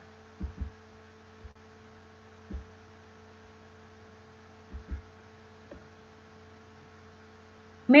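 Steady electrical hum on the microphone line, with a few soft, low thumps scattered through it.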